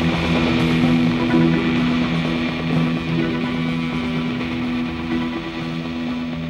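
Instrumental early-1970s krautrock/progressive rock band passage: guitar over steady held low notes, slowly getting quieter.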